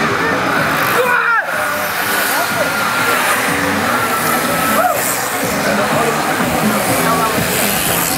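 Music with a voice in it, played over a roadside public-address loudspeaker, with crowd noise underneath; no clear sound of the passing bikes stands out.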